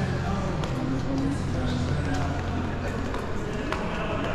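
Indoor shopping-arcade ambience: background voices and occasional footsteps on a polished stone floor over a steady low hum.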